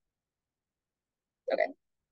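Dead silence, then near the end a woman briefly says "okay".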